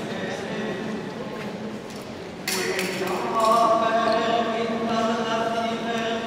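Choir singing Gregorian chant in the large stone interior of Notre-Dame cathedral, with long held notes that change pitch and swell a little past the middle. A brief rush of noise comes about two and a half seconds in.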